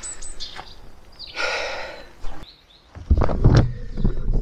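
Rustling and shuffling, a single knock about two seconds in, then loud low thumping handling noise on the camera's microphone near the end as the camera is picked up and moved.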